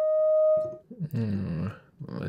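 A sampled clarinet long tone played back from a Kontakt instrument, one steady held note that fades out a little under a second in. It is followed by a brief low sound.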